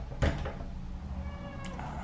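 A door latch clicks as the door is opened, then a Persian cat starts meowing about a second later, its calls growing louder near the end.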